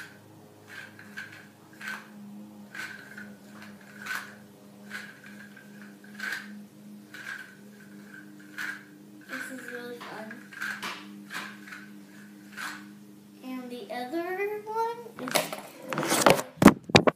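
A yo-yo thrown down and caught in the hand over and over, with a light click roughly once a second. A child's voice is heard briefly near the end.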